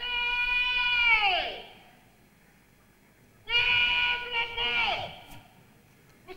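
A voice shouting long drawn-out drill words of command, each held on one high note and dropping away at the end: one at the start and a second about three and a half seconds in.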